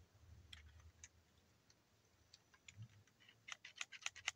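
Faint, sparse clicks from a muzzleloading percussion shotgun's lock as a percussion cap is fitted, with a quick run of clicks near the end.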